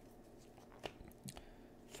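Near silence with a few faint ticks and light rustling as trading cards are slid and flipped through by hand.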